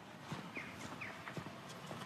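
Faint outdoor ambience: scattered light taps, with two brief rising high-pitched chirps about half a second and a second in.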